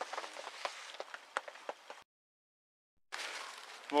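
Faint, scattered crackles and ticks from a fire burning inside a tent, over a low hiss. They are cut off about two seconds in by a second of dead silence at an edit, after which a faint outdoor hiss returns.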